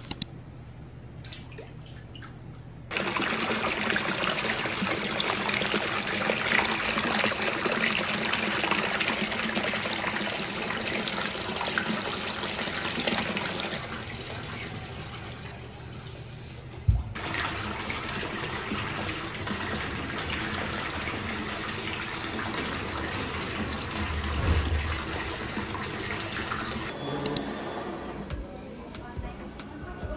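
Running water, a steady rushing splash that starts abruptly about three seconds in, eases a little past the middle with a single sharp knock, and stops shortly before the end.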